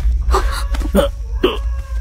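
A string of short, clipped vocal sounds, hiccup-like catches of breath and brief grunts, from people struggling over a low steady hum.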